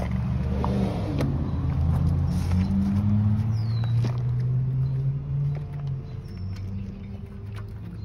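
A motor or engine running with a steady low hum that steps up in pitch around the middle and settles back down, with a few sharp metallic clicks on top.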